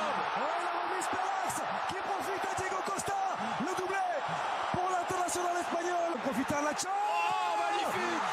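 Football match broadcast sound: a commentator's voice over steady stadium crowd noise.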